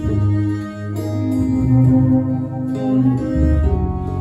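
Live acoustic folk trio playing an instrumental passage: a bowed fiddle melody over double bass and acoustic guitar, with the bass notes changing every second or so.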